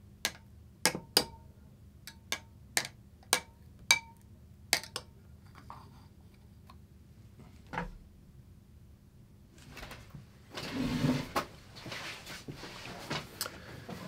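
About a dozen sharp, irregular clicks over the first five seconds, a dull thud near eight seconds, then a few seconds of soft rustling handling noise, all over a faint steady hum.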